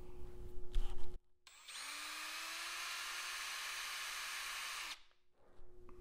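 Power drill spinning a wood auger bit held in a half-inch extension coupler. About a second and a half in it spins up with a short rising whine, runs at a steady speed for about three seconds, then cuts off abruptly. Light handling sounds come first.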